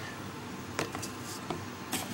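Handling noise from plastic toiletry containers and packaging: a few short clicks and taps over a steady background hiss.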